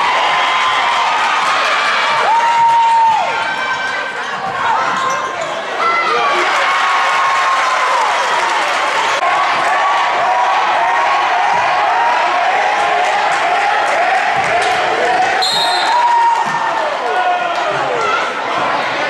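A basketball dribbling and sneaker squeaks on a hardwood gym floor during live play, over the steady voices of a crowd in a large hall. A short shrill referee's whistle sounds about three-quarters of the way through, and play stops.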